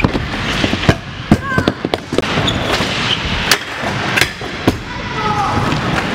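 Scooter decks and wheels knocking and clattering on a wooden skatepark floor and ramps during a crash: about seven sharp, separate knocks spread over a few seconds, with voices in the background.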